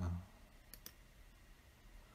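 Near silence: quiet room tone with two faint, short clicks a little before a second in.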